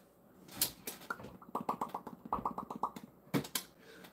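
A man swallowing a handful of pills: a few sharp clicks, and in the middle a fast run of wet mouth and throat pulses that sound like gargling.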